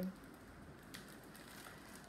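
Quiet room with faint handling noises of craft packaging being moved, including a soft click about a second in.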